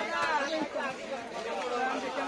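People talking, overlapping chatter of voices.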